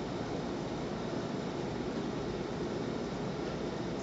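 Steady room noise: an even hiss and hum that holds level throughout, with no distinct sounds in it.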